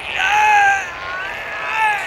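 A cartoon character's strained, high-pitched vocal cries, two drawn-out sounds in a row, as one player is choked by another.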